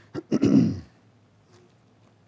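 A man clearing his throat into a headset microphone: two short rasps and then a longer one, all within the first second.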